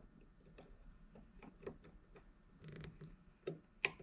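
Faint, irregular light clicks and ticks of small pliers and fingers handling a short piece of wire, squeezing it around a pin to form a small loop.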